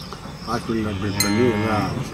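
Calf mooing once: a single drawn-out call that starts about half a second in and wavers in pitch.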